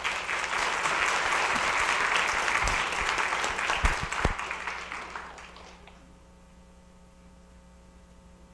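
Audience applauding, with a few low thumps near the middle; the clapping fades out after about five and a half seconds, leaving faint room tone with a steady hum.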